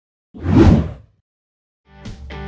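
A single short whoosh sound effect for an intro logo, lasting under a second and swelling then fading, followed by silence.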